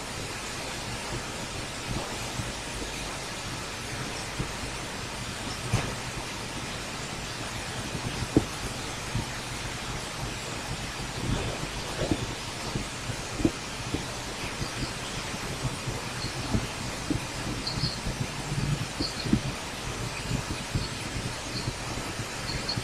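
Steady hiss and low hum of an open microphone, with a computer mouse clicking now and then.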